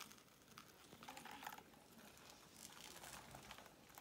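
Faint handling noise: soft rustles and light clicks in a few short bursts as a nitro RC buggy is turned over by hand.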